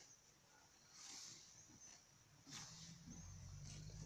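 Faint sound of a horse grazing, cropping grass with its teeth: two short rustling tears, about a second in and again about two and a half seconds in, in near silence.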